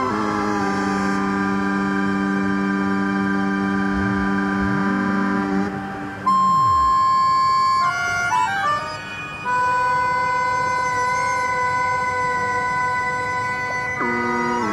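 Improvised synthesizer music through a small speaker: held electronic drone chords with sliding pitches in the bass a few seconds in. A loud, high held tone breaks off about eight seconds in, and after a moment of jumping pitches a new sustained chord settles.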